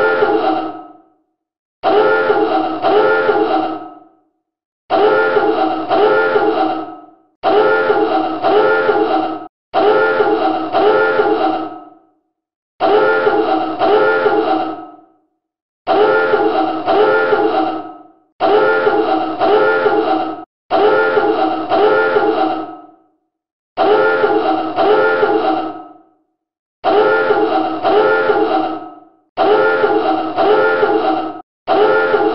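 Submarine dive alarm horn sounding over and over, the signal to dive: bursts of two quick blasts, each burst fading out, about every two and a half to three seconds with short silences between.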